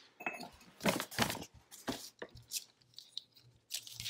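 Handling sounds of kitchen measuring utensils: a few short, irregular rustles and light clinks as a metal measuring cup is set down and a ring of plastic measuring spoons is picked up on a paper-covered table.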